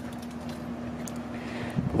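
A steady low mechanical hum, one held tone, over faint background noise.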